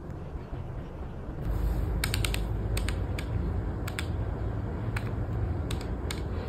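A pen writing in a spiral notebook and desk calculator keys being tapped: a soft steady scratching and rubbing with scattered sharp clicks, in twos and threes, from about a second and a half in.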